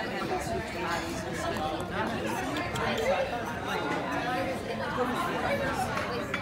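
Background chatter of several people talking at once around nearby tables, with no single voice clear.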